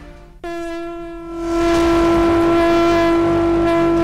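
A steady, horn-like tone starts suddenly about half a second in and holds at one pitch, and a fuller musical swell rises under it about a second later: the title sting of a segment intro.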